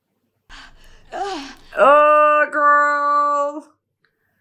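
A woman's voice: a sharp breath and a short rising-and-falling cry, then a long wail held at one steady pitch for about two seconds, with a brief break partway through.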